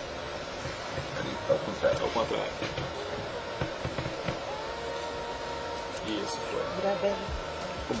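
Low room sound with faint, indistinct voices and soft music underneath, with no clear words and no loud events.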